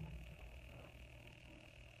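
Near silence: room tone with a faint steady high-pitched tone and a low hum.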